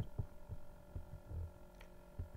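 Quiet steady electrical hum in the recording, with a series of soft, low, irregular thumps.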